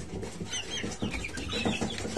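Young chickens peeping and clucking in a brooder box, with several short high chirps.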